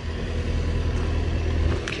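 Compact tracked excavator's engine idling steadily with a low hum.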